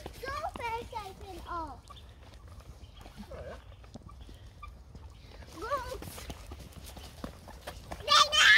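Footsteps on a wet asphalt path, with a young child's high, wordless sing-song calls in the first two seconds and again briefly near six seconds.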